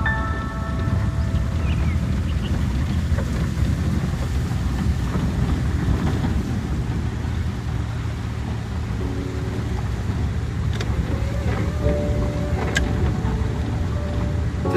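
Cabin noise of a car driving slowly on a wet, waterlogged, rough road: a steady low rumble of engine and tyres through the water. Faint steady tones join in over the last few seconds.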